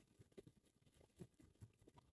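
Near silence, with a few faint soft ticks of seasoned oyster crackers shifting inside a plastic bag as it is shaken.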